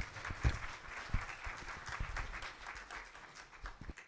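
Audience applauding, dense at first and thinning out, then cut off abruptly just before the end. Two low thumps stand out in the first second or so.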